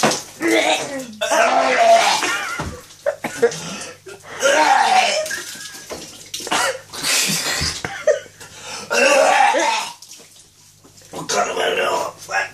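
A man gagging and retching in about five or six heaving bouts a second or two apart, after gulping down a drink.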